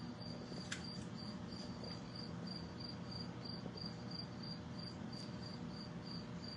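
Steady low hum of an aquarium filter pump running, with a short high chirp repeating evenly about three times a second.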